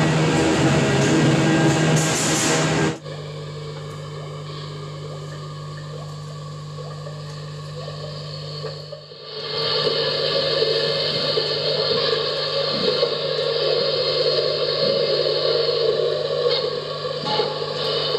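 Experimental noise music from amplified electric guitars and homemade electroacoustic instruments. A dense, loud wall of sound cuts off suddenly about three seconds in, leaving a quieter drone over a steady low hum. It swells back to a loud, thick texture about nine seconds in.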